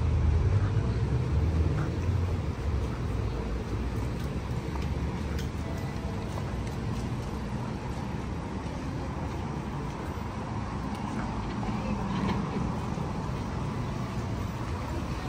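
City street traffic noise: car engines and tyres from passing vehicles, a low rumble loudest in the first couple of seconds as a vehicle goes by close, then settling into a steady hum.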